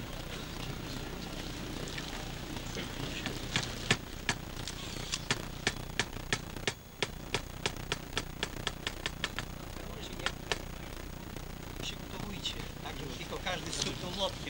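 Small hammer driving a ceremonial nail into a banner's wooden flagstaff: a fast run of light taps, about four a second, starting a few seconds in and going on for about six seconds, with a couple more a moment later.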